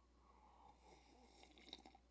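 Near silence, with faint sipping of coffee from a glass mug and a few small soft ticks near the end.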